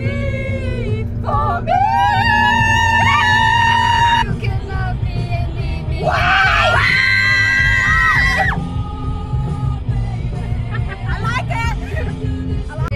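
Several women singing loudly along with music in a car, holding two long notes, over the steady low hum of the moving car.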